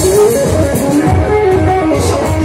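Live band music with electric guitar to the fore over bass and a steady drum beat.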